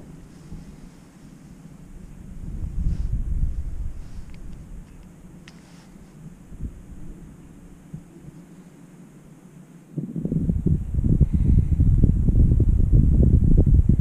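Wind buffeting the microphone in gusts, a low fluttering rumble that swells about two seconds in, eases off, then blows hard and steady from about ten seconds in.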